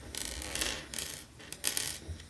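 Small plastic toy weapon pieces being handled: three short bursts of rattling and rustling, with a single click between the second and third.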